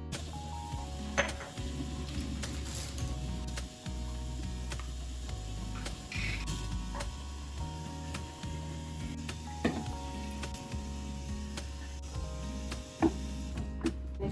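Background music with a changing bass line plays throughout. Under it is the hiss of a bathroom tap running into a glass jar, and a few sharp clinks of glass against the sink, the loudest about 1, 10 and 13 seconds in.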